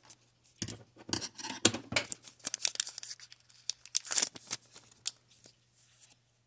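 Foil booster-pack wrapper being torn open and the cards pulled out: a run of irregular crinkling and tearing that stops about five seconds in.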